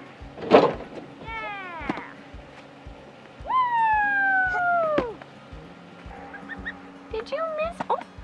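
A large block of alfalfa hay drops off a pickup's tailgate and hits the ground with a loud thud about half a second in. A long high cry, falling slightly in pitch, follows a few seconds later, over background music with a steady beat.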